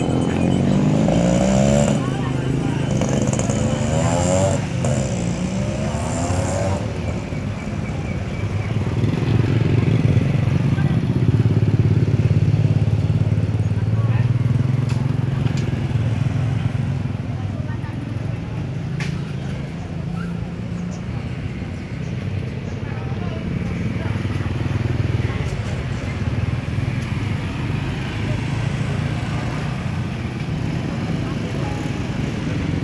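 Motorbike engines running as the bikes ride past on a street, the rumble building to its loudest about ten to fourteen seconds in. People's voices are heard over it in the first several seconds.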